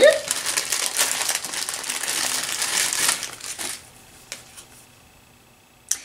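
Clear plastic packaging crinkling as it is handled, for about three and a half seconds, then going quiet apart from a couple of small clicks.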